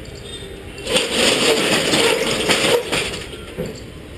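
Metal roller shutter of a shopfront rattling as it is rolled, a loud clattering rattle about two seconds long starting about a second in, over steady street noise.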